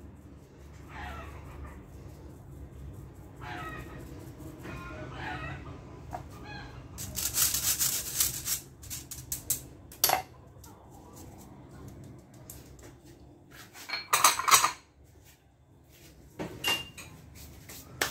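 Stainless-steel mesh sieve sifting flour over a plastic bowl: shaken in bursts of rattling and rustling, the loudest starting about seven seconds in and another near fourteen seconds, with sharp single taps of the sieve against the bowl between them.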